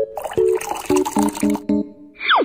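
Background music of quick, short notes, about four or five a second, over a hiss of liquid pouring from a baby bottle into an enamel mug.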